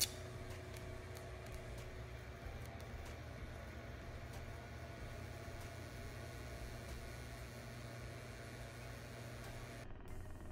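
Tesla candle's plasma flame running with a steady hiss over a low steady hum, with a few faint ticks.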